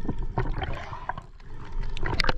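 Underwater recording: muffled water rushing and rumbling around the camera, with several sharp clicks and knocks scattered through it.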